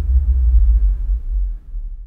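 A loud, deep low rumble on the film's soundtrack, a drone with nearly all its weight in the bass, easing off near the end.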